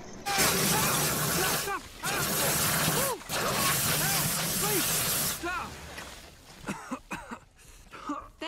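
A fire-hose water jet blasting against a car in three long bursts with short breaks, a voice crying out over the spray. It quiets after about five and a half seconds.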